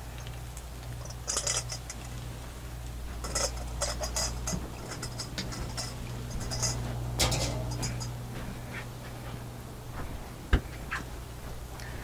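Food crackling and spitting on a hot Blackstone flat-top griddle in scattered clusters of short pops, over a steady low hum. Chunks of potato are tipped onto the griddle from a steel bowl near the start.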